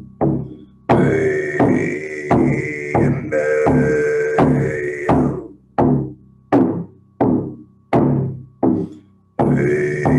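Shamanic drum beaten at a steady heartbeat-like pulse, a strike about every 0.7 seconds, to pace the breathing. A sustained drone joins the beat about a second in and stops around five seconds in.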